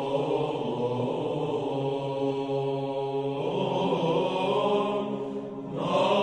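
Byzantine choir chanting a Greek communion hymn (koinonikon): a group of voices holds long drawn-out notes over a steady low drone. The melody moves to a new note about three and a half seconds in. The voices dip briefly near the end, then come back in louder.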